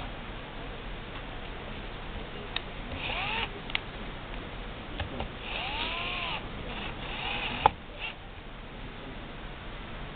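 A cat meowing three times, each call rising and then falling in pitch. Light clicks fall between the calls, and one sharp, loud click comes after the last meow.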